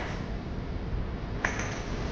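Steady low background noise with a single sharp click about a second and a half in.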